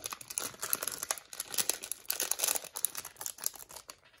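Thin clear plastic bag crinkling in the hands with quick, irregular crackles as small beads are shaken out of it.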